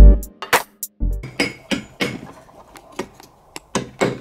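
A hammer strikes a steel chisel into a block of plaster of Paris in quick, sharp taps, about three a second. These begin about a second in, after a burst of music cuts off at the start.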